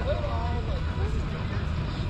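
Faint voices talking briefly in the first second, over a steady low rumble.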